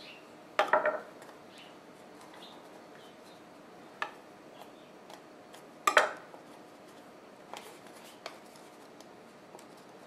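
A kitchen knife knocking and clicking on a wooden cutting board while pie-crust dough is cut and handled: a handful of short, separate knocks, the loudest about six seconds in, with quiet room tone between.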